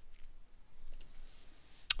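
A few faint clicks of a computer keyboard or mouse over quiet room tone, with one sharp click just before the end.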